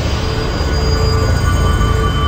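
Eerie soundtrack drone: several high, steady sustained tones enter about half a second in, over a loud, steady low roar of rushing water from a waterfall.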